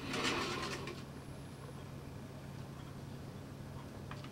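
A low-wheeled dynamics cart rolling along its aluminium track as it is pushed back to the start: a brief rolling noise in the first second, then only a faint steady low hum.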